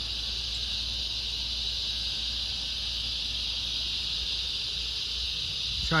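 Cicada chorus: a steady, continuous high-pitched drone.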